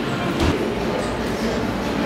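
Steady low rumbling room noise, with one short knock about half a second in.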